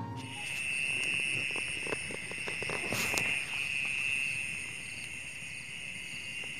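Crickets chirping steadily in a night-time chorus, with a few soft rustles and taps in the first half.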